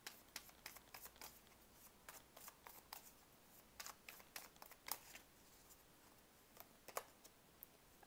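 Faint sound of a tarot deck being shuffled and handled by hand: scattered soft flicks and taps of card against card, a few a little louder than the rest.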